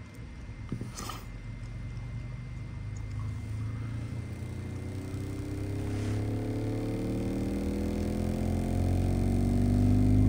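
Nemesis Audio NA-8T subwoofer playing a slow sine sweep in free air on clean, low power. Its low tone rises steadily in pitch from about 20 Hz and grows louder throughout, with faint overtones climbing with it. The driver is very quiet, with very little mechanical noise from the cone, spider and surround.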